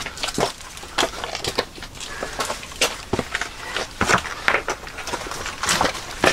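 Irregular footsteps, scuffs and knocks on loose rock as people clamber through a narrow rock passage, with no steady rhythm.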